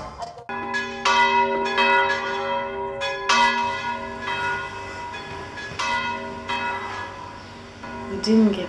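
Church bell struck repeatedly at uneven intervals, each stroke ringing on and slowly fading.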